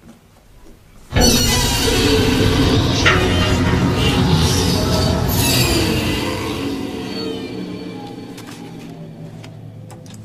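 Horror-film jump-scare stinger: after near quiet, a sudden loud burst of scary music cuts in about a second in and slowly fades away.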